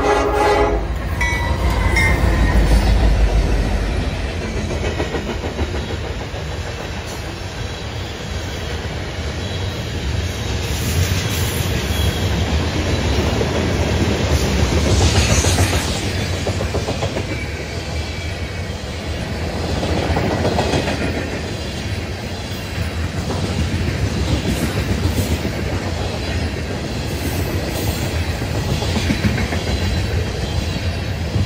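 Freight train passing close by. The tail of the lead GE AC44C6M locomotive's horn cuts off at the very start. Then the two diesel locomotives, the NS GE AC44C6M and a KCS SD70ACE, go by under full power with a heavy rumble, loudest in the first few seconds. A long string of loaded tank cars follows, its wheels clattering steadily on the rails.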